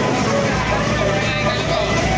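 Loud music played through truck-mounted DJ speaker stacks, with a voice over it and heavy bass that comes in about half a second in.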